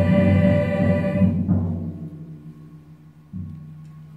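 Choir of female voices holding a chord that cuts off about a second and a half in, over deep pitched drum strokes that ring on. A single deep drum stroke sounds again near the end and rings on quietly.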